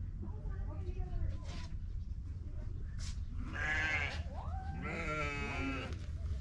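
Penned livestock bleating: two long, wavering bleats, the first about three and a half seconds in and the second about five seconds in, with fainter calls earlier.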